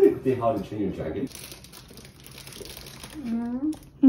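A woman laughs, then paper crinkles for a couple of seconds as a sandwich's paper wrapper is handled; a short vocal sound comes near the end.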